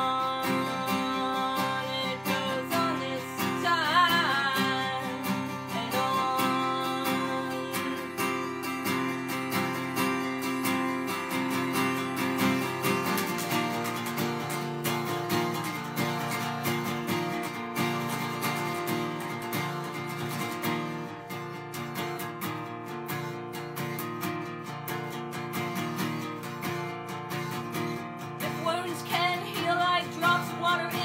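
Acoustic guitar strummed in a steady chordal pattern, with a woman's voice singing short phrases near the start, around four seconds in, and again near the end. The chord changes about thirteen seconds in.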